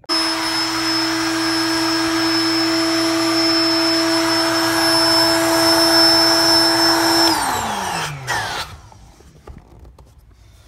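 Built-in electric air pump of a King Koil air bed running with a steady whine. About seven seconds in it is switched off and winds down, its pitch falling over a second or so, with a couple of clicks as the dial is handled.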